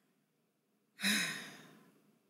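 A woman's sigh about a second in: one breathy exhale with a little voice in it, trailing off over most of a second.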